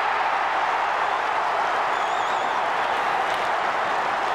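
Large football crowd cheering and applauding after a goal, a steady wall of noise, with a brief wavering high tone about two seconds in.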